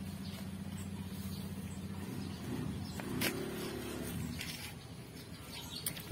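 An engine running with a low, steady hum that rises in pitch for a second or so partway through, with a single sharp click about three seconds in.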